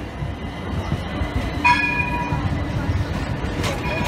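A modern low-floor tram on Istanbul's T1 line passing close by with a steady low rumble. Its warning bell rings once, a short ringing tone, a little under two seconds in.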